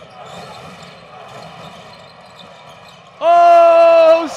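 Arena crowd noise, then about three seconds in the basketball game buzzer sounds the end of the first quarter: a loud, steady horn tone held for about a second.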